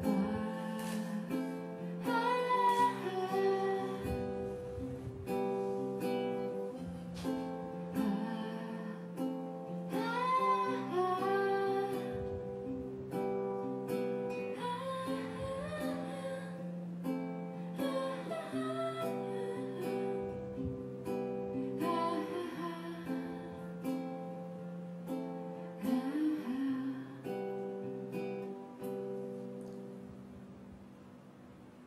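Acoustic guitar strummed in a steady rhythm, with a woman singing over it; the music gets quieter over the last few seconds as the song winds down.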